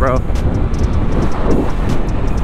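Wind rushing over the microphone with a Honda Navi scooter's 109 cc single-cylinder engine running underneath, cruising at about 50 mph.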